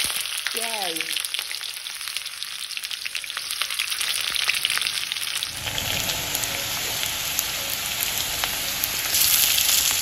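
Sliced red onions sizzling and crackling in hot oil in a steel kadai while a steel ladle stirs them. The sizzle grows fuller and deeper about halfway through.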